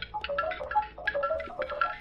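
A short melodic run of bright mallet-percussion notes in quick succession, stepping up and down in pitch. It sounds like a musical sting marking the entrance into the shop, and it stops just before the end.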